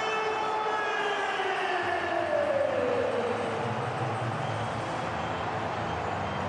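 Stadium goal siren sounding over the crowd after a goal: one long tone that slides down in pitch and dies away about three seconds in. The crowd noise carries on underneath.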